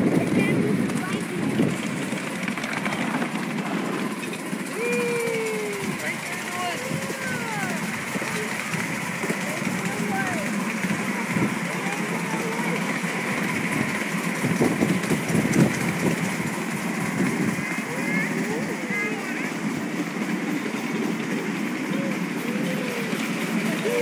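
Ride-on miniature train running along its track: a steady rumble with irregular rattling from the cars, and short voices of passengers over it.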